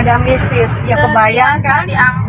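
A person talking inside a moving car, over the steady low drone of the car's engine and tyres on the road.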